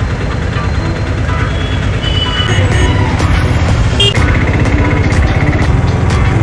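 Loud, steady rumble of an auto-rickshaw's engine and road noise, heard from inside the open cab while it drives through street traffic.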